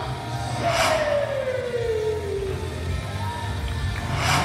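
Wrestler's entrance music playing through the arena sound system: a steady low bass pulse under a long tone that glides down in pitch over about two seconds, with a crash-like swell about a second in.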